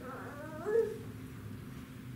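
A brief high-pitched whine that slides up and down in pitch for about a second, loudest just before it stops, over a steady low hum.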